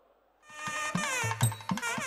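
Temple wedding music of nadaswaram and tavil starts up about half a second in, after a brief hush. The reedy nadaswaram plays a wavering, ornamented melody over tavil drum strokes about three a second.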